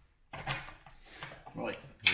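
Rustling and light scraping handling sounds as a rubber strip is worked at the end of an aluminium roof cross bar. A man's voice starts near the end.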